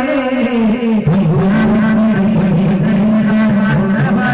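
A man's voice singing into a microphone through a PA system. From about a second in he holds one long steady note.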